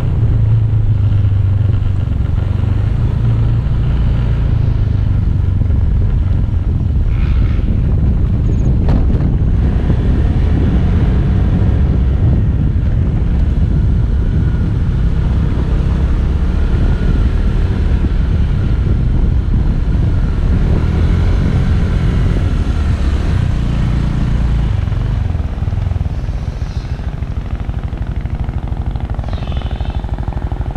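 Motor scooter engine running as it is ridden along a road, a steady low rumble that drops a little in loudness near the end.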